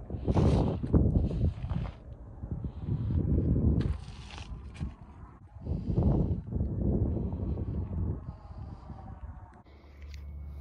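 Wind buffeting a phone's microphone in uneven gusts: a low rumbling rush that swells three times and drops away between.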